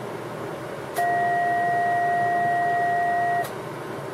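Two-tone test signal from a K3 transceiver, keyed to drive a linear amplifier: a lower and a higher steady tone sound together for about two and a half seconds, starting about a second in and beginning and ending with a click, over steady background noise.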